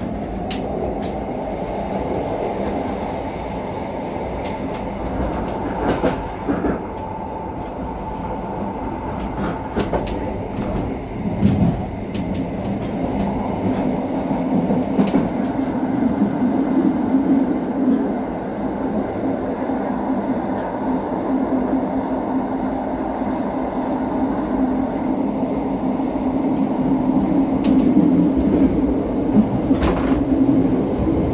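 A Bernina-line metre-gauge train, heard from the cab, rolling along with a steady rumble of wheels on rail and occasional sharp clicks. From about halfway a humming drone builds and the running grows louder as the train runs into a covered avalanche gallery.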